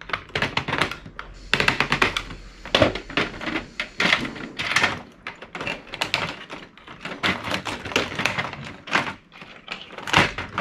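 Pliers prying and snapping chips and components off a VCR circuit board: a dense, irregular run of sharp clicks and cracks of metal on plastic and board.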